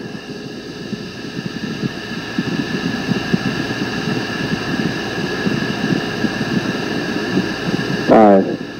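Steady low rumbling background noise with faint, steady high-pitched tones above it.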